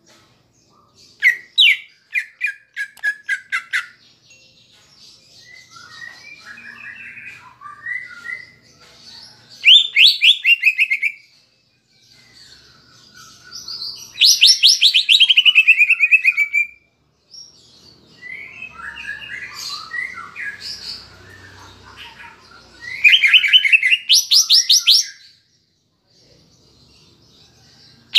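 Greater green leafbird (cucak ijo) singing: loud phrases of rapid repeated notes, one sliding down in pitch and the last rising, with softer chattering between them. Its song carries mimicked kapas tembak phrases.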